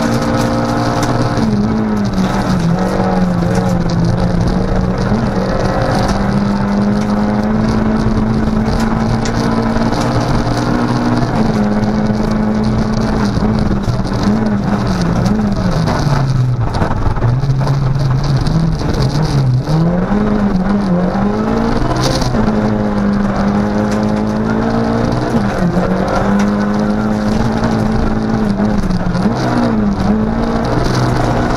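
Ford Fiesta R2 rally car's engine heard from inside the cabin at racing pace on a gravel stage. The engine note climbs and drops repeatedly with gear changes, falls lowest about halfway through as the car slows, then pulls back up through the gears, over steady road and gravel noise.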